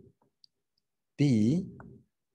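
A man's voice saying a single word about a second in, after a quiet stretch broken by one faint, brief click.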